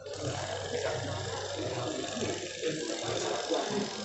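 Indistinct voices of several people in a room, over a steady low hum and general background noise.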